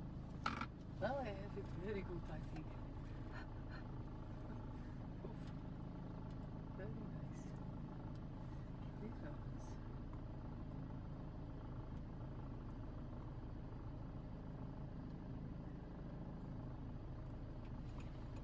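A vehicle engine idling steadily, a low even hum. Brief low voices and a few clicks come in the first couple of seconds.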